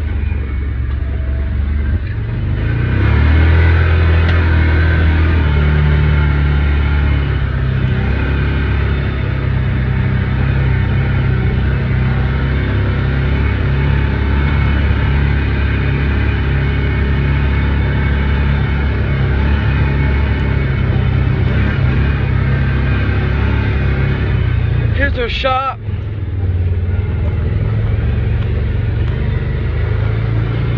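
Can-Am side-by-side UTV engine running steadily under way at low speed, a continuous low drone. Near the end the engine note dips briefly as the machine slows.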